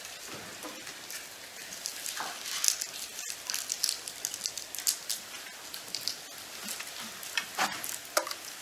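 Scattered light clicks and rustling of a congregation passing communion trays, small cups clicking against the trays, with a few sharper clicks among them.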